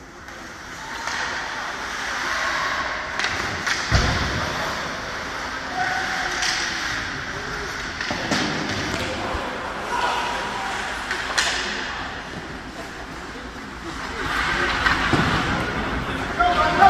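Ice hockey play in an indoor rink: distant voices of players and spectators, with sharp knocks of sticks and puck and a heavy thud against the boards about four seconds in.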